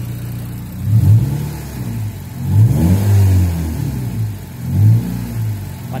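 Mazda MX-5 Miata's four-cylinder engine idling and revved three times, short blips about a second in and near the end with a longer rev in the middle, each rising and falling back to idle. The revs are run with an iForce throttle controller just plugged back in.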